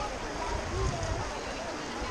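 Shallow river rushing over stones in a steady wash of water noise, with faint voices of people bathing in it.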